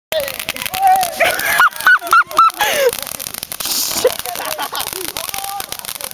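Ground fountain firework crackling and hissing, with boys yelling and laughing over it, including a quick run of high laughing shrieks about two seconds in.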